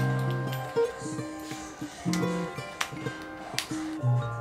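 Lo-fi background music with a plucked guitar.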